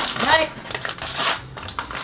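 Foil blind bag crinkling as hands grip and pull at it to tear it open; the bag does not tear.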